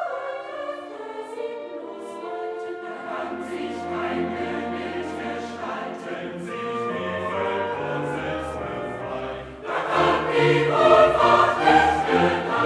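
A choir sings with an orchestra in a classical choral work, and the music swells louder and fuller about ten seconds in.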